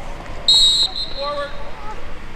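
Referee's whistle: one short, shrill blast about half a second in, trailing off briefly, blown to end the play.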